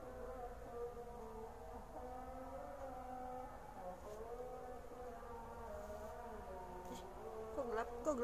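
Soft wordless humming by a young woman's voice, a slow wavering tune with held notes that shift in pitch every second or so.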